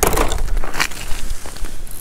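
Sharp crunches and scrapes on lake ice, with a few crisp cracks, loudest in the first second and thinning out toward the end.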